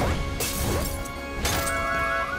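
Two crashing impacts about a second apart, each a sudden smash with a short noisy tail, over steady background music.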